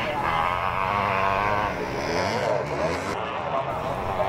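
Engines of several classic motocross bikes running on the track together, their pitches overlapping and rising and falling as the riders work the throttle.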